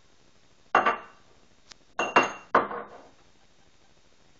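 A clear drinking glass clinking against hard kitchen surfaces as it is handled and set down: one sharp clink just under a second in, then a quick run of three clinks about two seconds in, each with a brief ring.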